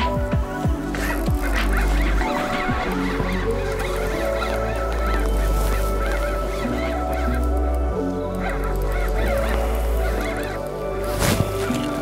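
Geese honking repeatedly over background music.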